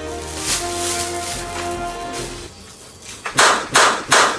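Background music with held notes, then near the end two sharp whacks of someone being hit over the head with a swung object.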